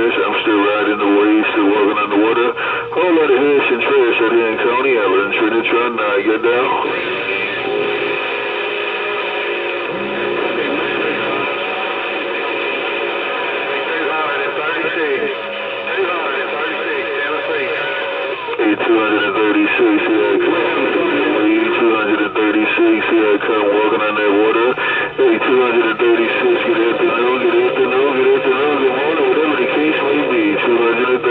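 Uniden Bearcat CB radio tuned to channel 28 (27.285 MHz), its speaker playing distant stations' voices over steady tones on a strong signal. From about 8 to 18 s the voices drop back and the steady tones carry on, before the voices return.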